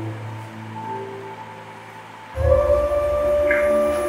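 Background music between narrated lines: soft sustained tones, then a little over halfway through a louder, fuller passage with long held notes over a low bass comes in.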